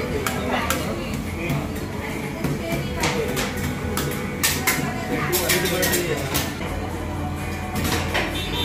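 Metal spatulas striking and scraping on a stainless steel rolled-ice-cream cold plate while the cookies-and-cream mix is worked: a run of sharp, irregular metallic clinks over background chatter.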